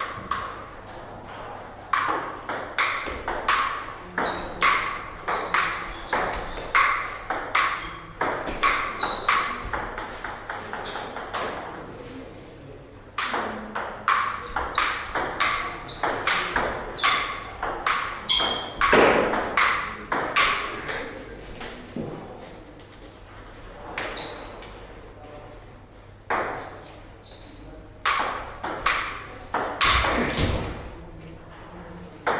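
Table tennis rallies: a celluloid ball ticking sharply off rubber bats and the table in fast back-and-forth runs, two long rallies in the first two-thirds and more hitting near the end, with short pauses between points.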